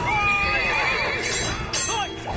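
A horse neighing: one long whinny that starts high and quavers as it falls, followed near the end by a short sharp knock.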